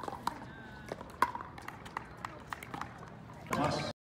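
Pickleball rally: several sharp knocks of paddles striking the plastic ball and the ball bouncing on the court, spaced irregularly less than a second apart. A brief voice is heard near the end, then the sound cuts off abruptly.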